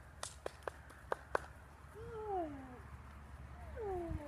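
Five sharp clicks in quick succession, then a dog whining twice, each whine a long tone falling in pitch.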